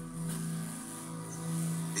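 Drama underscore music playing from a television speaker: sustained low held notes forming a steady drone under a pause in the dialogue.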